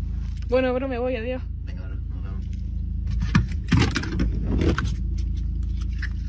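Inside a car, a steady low engine-like hum runs throughout. Sharp clicks and rattles come from the interior door handle and latch being worked, most of them between about three and five seconds in.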